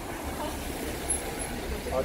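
Steady low rumble of motor traffic on a city street, as from a passing large vehicle.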